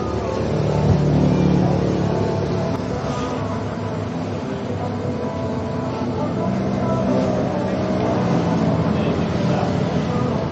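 A low motor-vehicle engine hum that swells about a second in and again past the middle, under a murmur of people talking, with a sharp click right at the start.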